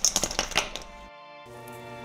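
Hands rummaging in a plastic cooler, a quick run of sharp clinks and knocks. About a second in, background music starts.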